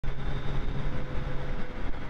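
2023 Suzuki Hayabusa under way, its inline-four running steadily beneath a constant rush of wind and road noise.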